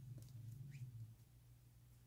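Near silence: a low steady hum, with a faint short squeak of the yarn being worked on a metal crochet hook about two-thirds of a second in.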